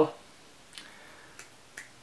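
A near-quiet pause between a woman's words, broken by three faint short clicks spread across the second half.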